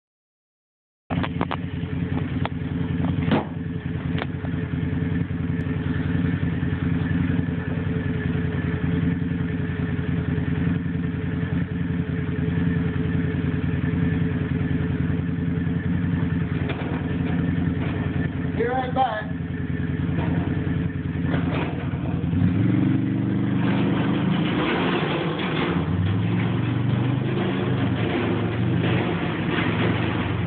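A small engine running steadily, with its note stepping up and down over the last few seconds as it is revved. A few sharp knocks sound within the first four seconds.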